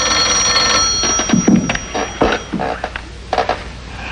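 Desk telephone bell ringing, a long ring that stops about two and a half seconds in, followed by a few knocks as the receiver is picked up.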